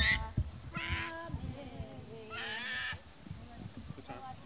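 Two short, high, whining vocal sounds from a young child, the first about a second in and a longer, rising one between two and three seconds in.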